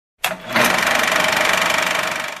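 Film-projector clatter sound effect: a short click, then a fast, steady mechanical rattle from about half a second in, with a faint steady whine beneath it.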